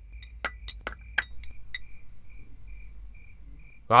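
A porcelain spoon clinking against a porcelain bowl, five or six light clicks in the first two seconds, over a cricket chirping in an even, regular pulse.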